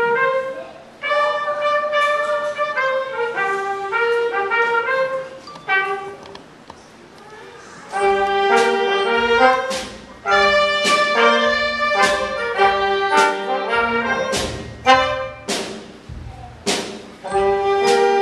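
Small concert band of woodwinds, brass, bells and drums playing a jazzy, swinging minor-key tune. A woodwind melody thins to a short lull about six seconds in. About two seconds later the full band comes in louder, with brass chords and sharp drum hits.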